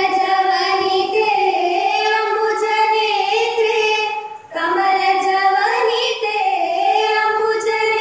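A group of women singing one melody together in long, held notes, with a short break for breath about four and a half seconds in.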